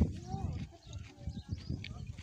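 Voices of a group of men talking and calling out in the background, with a short thump right at the start.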